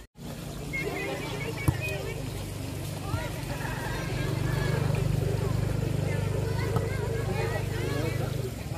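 Football match on artificial turf: distant players' shouts, a sharp ball kick about a second and a half in and a lighter one near three seconds, over a steady low droning hum that grows louder midway.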